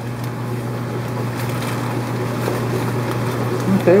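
Steady hum and hiss of aquarium fish-room equipment running, with a few faint crinkles of plastic fish bags being handled.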